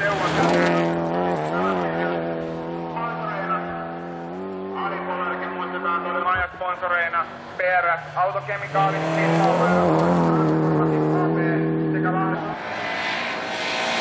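Rally car engine running hard at high revs on a gravel stage, held at a steady pitch. About six to eight seconds in it breaks off briefly, as for a lift or gear change, then pulls steadily again.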